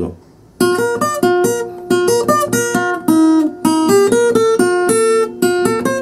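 Acoustic guitar, capoed at the third fret, playing a bachata melody slowly in G major. After a short pause it picks a string of separate notes, some single and some in pairs, about four or five a second.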